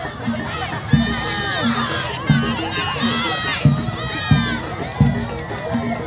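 A crowd of children shouting over the steady low drum beat of the barongan's accompanying music, about three beats every two seconds, alternating strong and weaker strokes.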